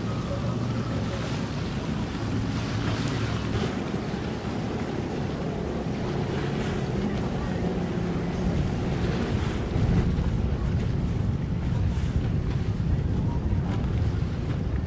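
Wind blowing across the microphone over open water, with a low steady motor hum underneath.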